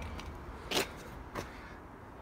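Front door of a 2003 Hyundai Santa Fe being opened: a sharp click of the handle and latch a little under a second in, then a fainter knock about half a second later, over a faint low rumble.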